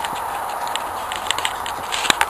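Footsteps crunching along a dirt and pine-needle forest trail, a few sharp crackles every few tenths of a second, over a steady background hiss.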